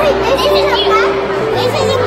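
Young children's voices chattering and calling out in a busy hall, over a steady droning tone.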